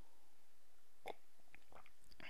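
Quiet room tone with a few faint, short clicks, the first about a second in and a small cluster near the end.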